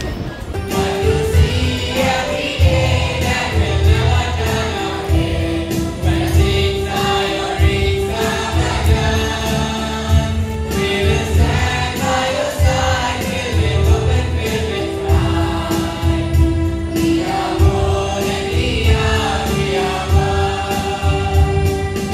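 A children's school choir singing a song in unison over a steady low beat in the accompaniment.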